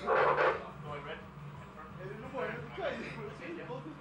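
Indistinct human voices: a loud shout in the first half-second, then scattered unintelligible calls and voice sounds, over a steady low hum.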